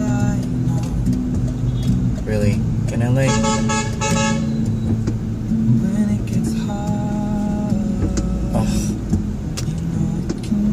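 Pop song playing on a car's stereo, heard inside the cabin: sung vocals with held notes over a steady low backing, with the car's hum underneath.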